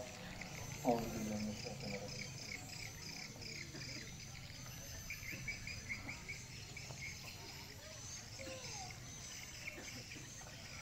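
Faint outdoor background of birds and insects: a run of quick repeated high chirps for a few seconds over a fainter steady insect trill, after one spoken word about a second in.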